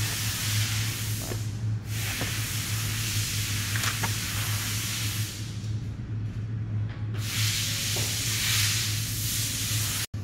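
Air hissing, loudest over the first two seconds and again over the last three, over a steady low hum, with a few light clicks.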